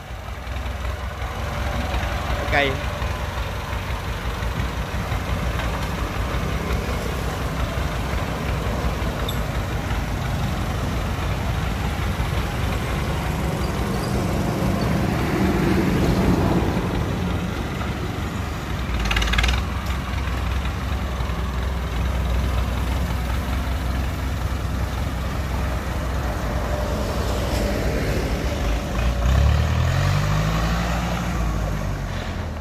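Massey Ferguson 185 tractor's four-cylinder diesel engine running steadily as it pulls a trailer loaded with rice sacks through a tight turn. The revs rise near the end.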